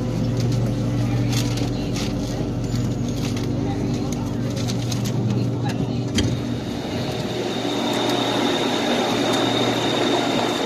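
Interior of a BTS Skytrain EMU-A train coming to a stop at a platform: a steady electrical hum from the train runs until about six seconds in, where it ends with a clunk. After that a steady high-pitched tone sounds over a wider noise.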